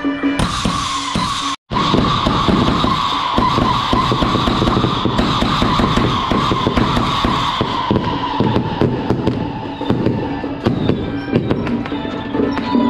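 Ground fountain firework spraying sparks: a loud, steady rushing hiss whose pitch slowly sinks as it burns, with many sharp crackles through it, dying away near the end as music comes back in.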